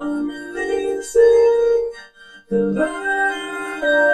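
A vocal track run through a Reason BV512 vocoder, with a Europa synth playing held MIDI chords as the carrier: the voice comes out as sustained, organ-like synth chords. There are two phrases, with a break of about half a second near the middle.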